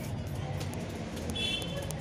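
Footsteps and handling noise while walking down a staircase, with a brief high-pitched tone about one and a half seconds in.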